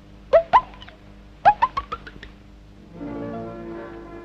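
Cartoon sound effect of short, squeaky bird-like chirps: two quick ones, then a fast run of five or six that fade away. Soft music chords come in about three seconds in.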